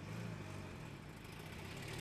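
Low steady mechanical hum, a little stronger in the first half-second or so.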